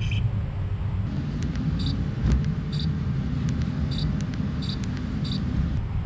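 Steady low outdoor rumble, with about five short, faint, high blips from the toy camera's menu buttons being pressed.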